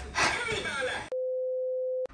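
A girl's voice calls out, then about a second in it cuts suddenly to a steady single-pitched beep, the test-card tone laid over a TV colour-bar screen as an edit transition.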